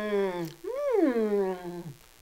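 A woman's closed-mouth "mmm" hums of enjoyment while chewing a bite of brownie. There are two drawn-out hums: the first ends about half a second in, and the second rises then slides down in pitch, stopping near the end.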